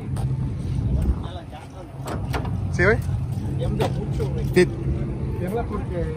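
A car engine idling steadily, dipping briefly about one and a half seconds in, with a sharp knock about two-thirds of the way through.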